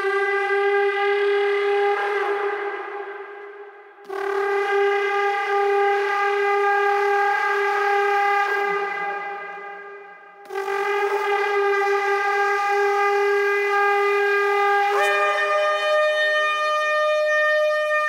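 A shofar sounded in three long, sustained blasts, the last one jumping to a higher pitch near the end.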